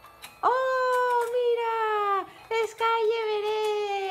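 A high voice giving two long, drawn-out wordless exclamations, each held about two seconds on a slowly falling pitch, with a short break between them.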